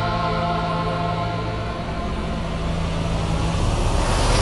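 Background music: a sustained held chord over a low drone, thinning out near the end.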